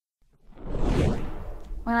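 Silence, then a whooshing rush of noise that swells and fades over about a second, just before a woman starts speaking.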